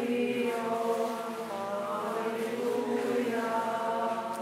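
Choir singing Orthodox liturgical chant in slow, long-held notes.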